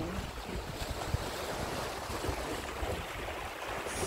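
Small sea waves washing and lapping against shoreline rocks, a steady wash, with some wind rumbling on the microphone.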